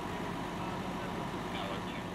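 A vehicle engine idling steadily under an even background hiss, with faint voices in the distance near the end.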